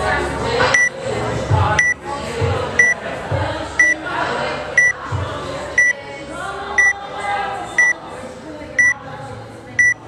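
Workout countdown timer beeping once a second: ten short, identical high beeps counting down the final seconds to the start of the workout.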